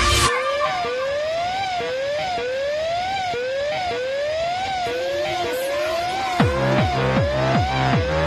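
Electronic pop music built on a repeating siren-like rising sweep, about one a second. About six and a half seconds in, a heavy beat of deep, pitch-dropping kick drums comes in under it.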